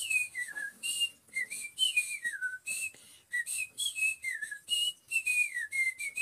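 Cockatiel whistling a run of short notes that slide up and down in pitch, with brief gaps between them.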